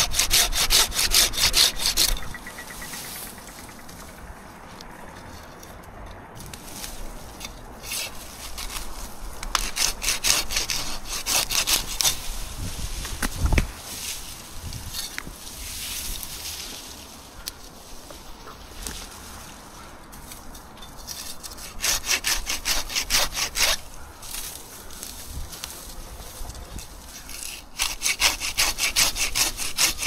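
Curved hand pruning saw cutting small Douglas fir limbs in quick back-and-forth strokes, in four bursts of sawing with pauses between. A single short, low thump comes about midway through.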